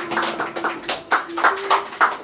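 A small audience clapping, with separate claps about five a second at the close of a live set.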